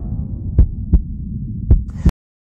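Outro logo sound design: a low rumbling drone with deep thumps in pairs like a heartbeat, about a second apart, the last hit sharper.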